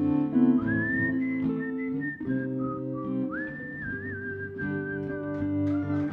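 Whistled melody over acoustic guitar accompaniment: a single pure line that slides up into long held notes, twice gliding up to a higher sustained note.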